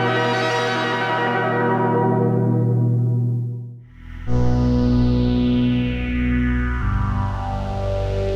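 Analogue Eurorack modular synthesizer played through a Next Phase phaser. A held low note with sweeping overtones dies away about four seconds in. A new note then starts with a bright phased sweep that falls slowly in pitch, and the bass note changes near the end.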